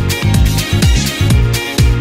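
Upbeat dance-style background music with a steady drum beat and a prominent bass line that slides down in pitch at times.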